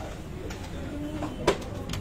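A cardboard jewellery box being opened by hand, with one sharp snap about one and a half seconds in as the lid comes up.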